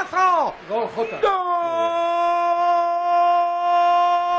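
Brief excited talk, then, about a second in, a man's long goal shout held on one steady pitch, a celebration of Real Madrid's third goal.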